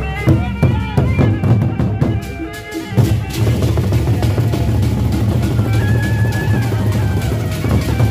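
Gendang beleq ensemble playing: the large Sasak barrel drums beaten with sticks, with steady pitched ringing tones over them for the first few seconds. From about three seconds in, the drumming becomes a dense, fast roll.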